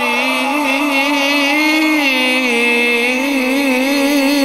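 A man's voice reciting the Quran melodically through a microphone, drawing out one long ornamented note whose pitch wavers and rises a little near the middle.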